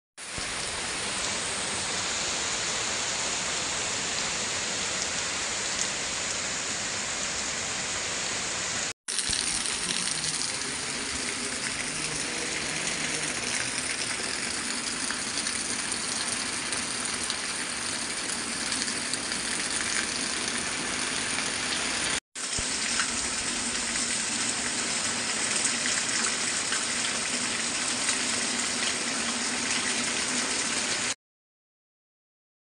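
Heavy rain falling on trees and open water as a steady hiss, cut off twice for a split second, about a third and two-thirds of the way through.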